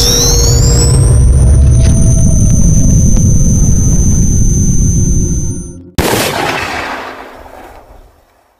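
Cinematic horror intro sound effect: a heavy low rumble under a high screech that rises and then holds, cutting off suddenly, then a single crashing boom that fades away over about two seconds.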